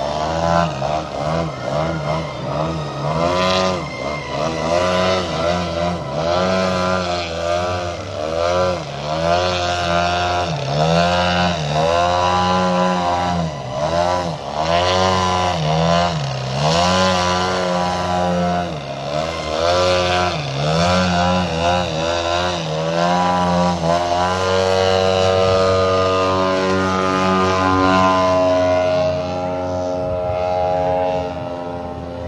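Large-scale radio-controlled aerobatic model plane's engine and propeller, the pitch swinging up and down over and over as the throttle is worked while the plane hangs in a hover just above the ground. In the last several seconds the note holds steadier as the plane climbs away.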